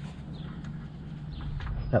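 A few faint, short clicks and knocks of handling over a low steady rumble; a man's voice starts right at the end.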